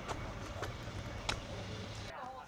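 Faint outdoor ambience with a low steady hum and three faint clicks, roughly evenly spaced.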